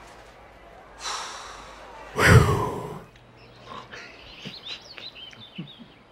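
A sound-effect track: a short rushing noise about a second in, then one loud, sudden crash-like hit about two seconds in, followed by a scatter of short, high chirps like birdsong.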